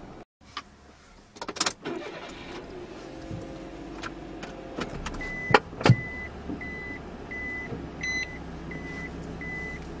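Inside a parked car: handling clicks, then the engine starts and idles. From about five seconds in, a short high dashboard warning chime beeps steadily, about three times every two seconds. Two sharp knocks come just after the chime starts.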